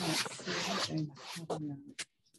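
Scratchy rubbing against a stretched canvas for about a second, then softer rustling, heard over a video call, with muffled voices underneath and a click at the end.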